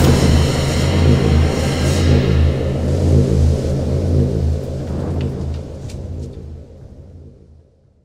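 Deep, loud cinematic rumble with dark music, the low end heaviest, fading away over the last three seconds.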